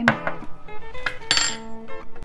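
A metal spoon clinking against the stainless steel inner pot of an Instant Pot: about three sharp clinks, the last one ringing briefly. Background music plays underneath.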